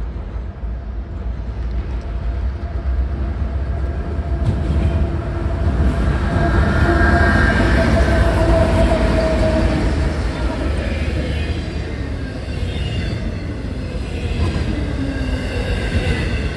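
A CSX freight train's diesel locomotives approaching and passing close by, their engine drone swelling to its loudest about eight seconds in and then easing off, over a steady low rumble, followed by the intermodal cars rolling by on the rails.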